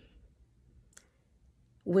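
Near silence with low room tone, broken by one faint, short click about halfway through; a woman's voice starts just before the end.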